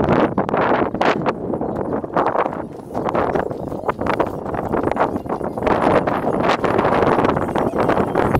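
Wind buffeting the camera microphone in uneven gusts, a rough rushing noise that swells and dips.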